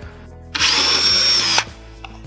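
Cordless drill with a 10 mm bit boring a hole through 12.5 mm plasterboard in a single run of about a second, starting about half a second in, with a steady high whine that dips as the drill stops.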